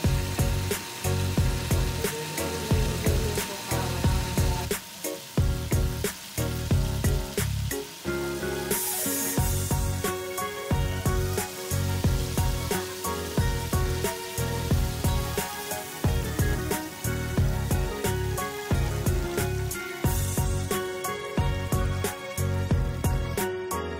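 Background music with a steady beat, over the sizzle of food frying in hot oil. About nine seconds in there is a brief, louder hiss.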